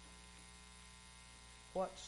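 Steady low electrical mains hum in a pause between words, with a man's voice beginning to speak near the end.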